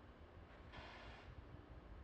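Near silence: a faint low rumble, with a brief hiss about three quarters of a second in.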